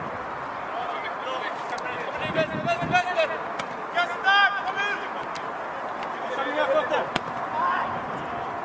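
Voices shouting across an open-air football pitch during play, in short calls, loudest about four seconds in, with a few sharp knocks.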